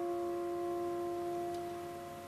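Grand piano chord held and ringing out, fading slowly as the played passage ends.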